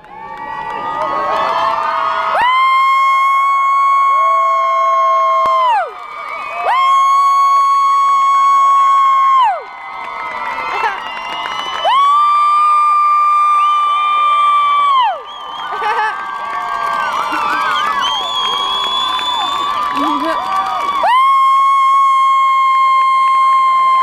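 Stadium crowd cheering, with a nearby spectator letting out four long, high-pitched held screams of about three seconds each, each dropping in pitch as it ends.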